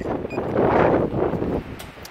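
Wind buffeting the microphone, a loud rough rushing noise that eases off about a second and a half in.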